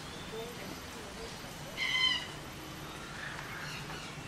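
A single short, clear bird call with a slight waver, about halfway through, over faint background chirping and distant voices.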